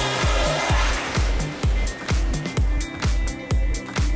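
DJ mix of dance music with a steady kick drum about two beats a second. A thick wash of sound thins out over the first second, leaving the beat and sparser parts.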